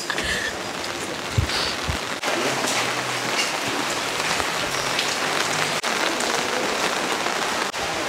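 Steady rain falling on umbrellas and wet cobblestone paving.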